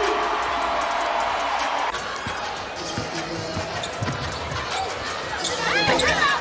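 Basketball game sound on an indoor court: a ball bouncing on the hardwood, with arena noise and a held musical tone louder for the first two seconds before dropping away. Quick squeaks, likely from sneakers, come near the end.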